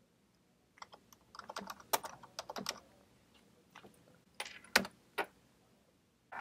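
Typing on a computer keyboard: quick runs of keystroke clicks, one flurry starting about a second in and a shorter run near the end.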